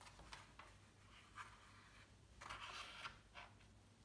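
Faint rustling of paper and thread as a needle and thread are worked through an already-threaded piercing in the zine's folded pages during hand sewing: a few soft rustles, the longest about two and a half seconds in.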